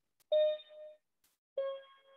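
Two notes played on a small electronic keyboard: a higher note, then about a second later a note a step lower, each starting sharply and dying away within about half a second. Two neighbouring black keys are being played one after the other.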